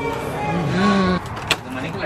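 Voices in a restaurant that cut off about a second in, followed by a sharp click of a door's lever handle and latch as the door is opened.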